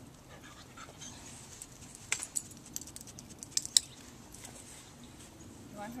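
Metal chain-link gate rattling and clinking in a quick irregular series of sharp clicks, about two seconds in and lasting under two seconds, the loudest clink near the end of the series, as the gate is worked during a dog's wait-at-the-door training.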